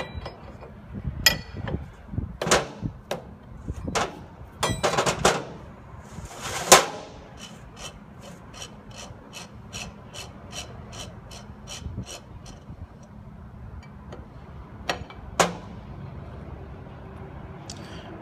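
Metal knocks and clanks from a steel wrench and the steel parts of a rod rotator as its actuator body is worked loose and taken off. They are followed by an even run of light clicks, about four a second, for several seconds, and two more knocks near the end.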